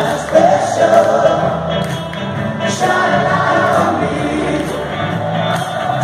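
Live rock band playing with singing, picked up from among the audience in an arena, with long held vocal notes.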